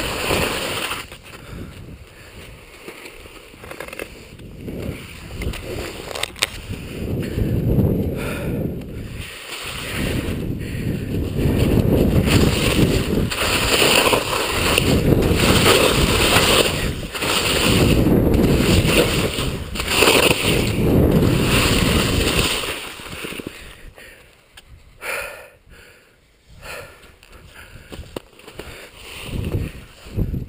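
Telemark skis scraping and carving across packed snow through a series of linked turns, mixed with wind rushing over the body-worn camera's microphone. The noise swells with each turn, about every two seconds, and falls much quieter for the last few seconds.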